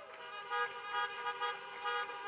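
Many car horns honking at once in long, overlapping held tones, swelling and dipping in loudness: an audience seated in parked cars is applauding by horn.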